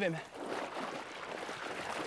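Shallow seawater splashing and sloshing as a Komodo dragon walks through the surf at the water's edge, a steady watery noise.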